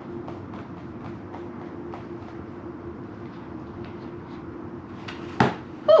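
Quiet room tone with a steady low hum and faint scattered ticks while a sheet of paper is pressed onto shaving cream. Near the end comes one short sharp sound as the paper is peeled up off the foam.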